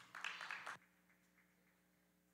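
Brief scattered clapping from the congregation that cuts off abruptly under a second in, leaving near silence with a faint steady hum.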